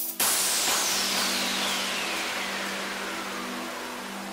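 Electronic dance track breakdown: the kick drum stops, and a synthesized white-noise sweep falls slowly in pitch and fades over a held low synth chord, with no beat.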